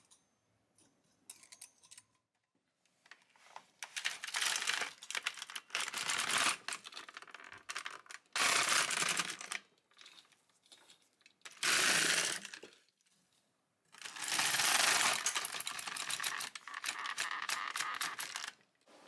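LK150 plastic knitting machine's carriage pushed back and forth across the needle bed, knitting row after row. About six passes of roughly a second each, with short pauses between, after a few faint clicks in the first three seconds.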